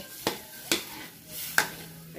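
Metal ladle stirring chicken pieces in freshly added chicken stock in a wok, over a low sizzle, with three sharp clacks of the ladle against the pan.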